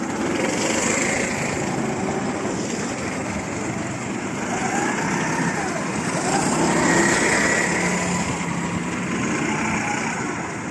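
Several go-kart engines running as karts lap the track, their pitch rising and falling as they come through the corner and accelerate away, with the loudest passes about a second in and around seven seconds in.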